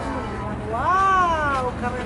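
A single high-pitched, drawn-out vocal call, about a second long, rising and then falling in pitch.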